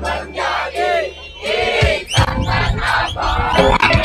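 Loud live band music with a crowd shouting and singing along; drum hits join in about halfway through.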